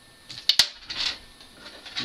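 Small metal parts handled by hand: two sharp clicks about half a second in, then a brief scraping rattle around one second, as wire leads are pressed against a coin cell battery to test a musical greeting card's circuit.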